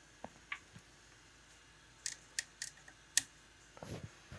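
Scattered light clicks of a Eurorack patch cable being handled and its plug pushed into a 3.5 mm jack on a modular synthesizer panel, with a bunch of clicks two to three seconds in and the sharpest a little after three seconds.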